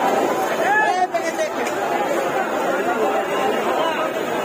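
Many voices talking over one another at once: the steady chatter of a dense market crowd.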